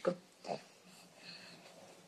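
A baby being spoon-fed puree gives one short grunt about half a second in; otherwise the room is quiet.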